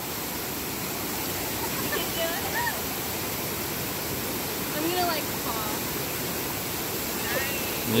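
Small mountain creek rushing over rocks in a steady whitewater cascade.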